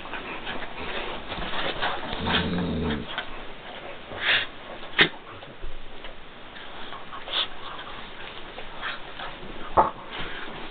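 A pit bull puppy and a small Jack Russell/Chihuahua mix play-wrestling: a low growl lasting under a second a couple of seconds in, scuffling and rustling of a blanket, and two sharp clicks, one halfway through and one near the end.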